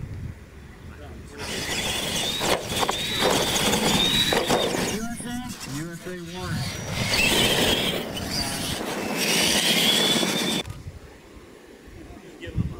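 Radio-controlled Clod Buster-style monster trucks racing flat out over a dirt track: electric motors whining under full throttle with tyre and dirt noise. The run starts about a second and a half in and cuts off sharply near the end. A voice shouts briefly in the middle of the run.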